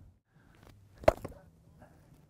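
A single sharp knock about a second in, from a wooden cricket bat, over faint background noise.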